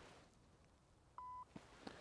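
Putter striking a golf ball with a faint click right at the start, then near silence broken by a short steady electronic beep about a second in and two faint ticks.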